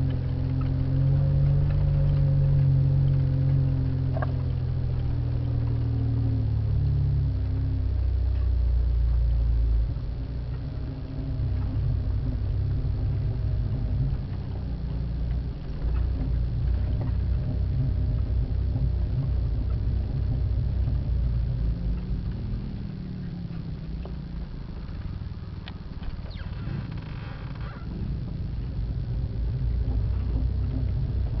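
The engine of an off-road 4x4 runs steadily at low speed for the first several seconds. It then turns rougher and uneven, with knocks and rattles as the vehicle crawls over a rutted dirt track.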